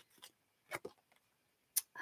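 A few light, scattered clicks of tarot cards being handled as one is drawn from the deck, the sharpest near the end.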